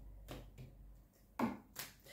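Tarot cards being laid down on the table: a few soft taps and slides of card on card, the loudest about a second and a half in.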